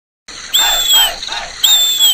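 Bird calls in a jungle-style sound effect: two long whistled notes, each about half a second and dipping slightly at the end, over quicker, lower chirps, starting suddenly about a quarter second in.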